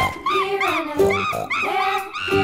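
Chimpanzee calling in a quick run of short yelps that rise and fall in pitch, about three or four a second, over background music.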